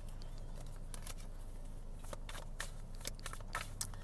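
Tarot cards being handled and laid out: a string of short, irregular clicks and snaps over a steady low hum.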